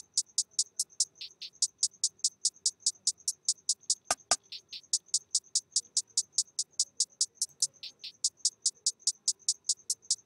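Programmed trap hi-hat pattern playing on its own: quick, evenly spaced crisp ticks with brief pauses and rolls. Two sharp clicks sound about four seconds in.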